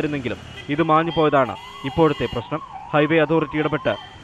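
A siren wailing up and down, about two swells a second, from about a second and a half in, heard under speech on a busy traffic road.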